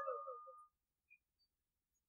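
The last of a man's speaking voice fades out through the microphone within the first half second, then near silence.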